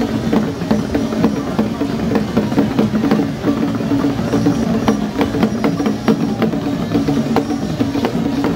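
Drum and percussion music with rapid, sharp struck beats over a steady pitched drone.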